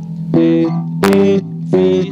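Five-string Squier electric bass slapped with the thumb in a slow note-by-note exercise: about three separate notes, each with a sharp, bright attack, with short gaps between them. The player calls out the note names along with them.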